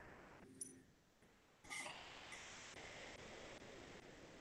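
A large gong played softly with a mallet, beginning a little before halfway through: a faint stroke, then a low, steady wash of gong sound that keeps ringing.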